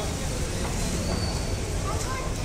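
Street traffic noise: a steady low rumble of road vehicles, with a short rising tone near the end.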